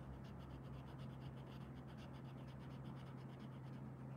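Blue felt-tip marker scratching faintly on paper in quick, repeated short strokes as it colours in, over a low steady hum.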